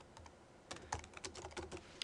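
Computer keyboard being typed on, a quick run of faint key clicks starting under a second in.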